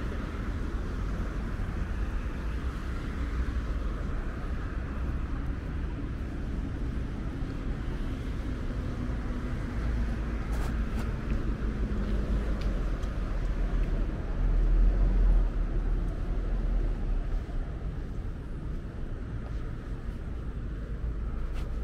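Night-time city street ambience: a steady low rumble of distant road traffic with a faint hiss, swelling louder for a couple of seconds about three quarters of the way through.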